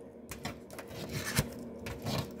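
Tarot cards being handled: light rubs and soft taps of the cards, with a sharper tap about one and a half seconds in.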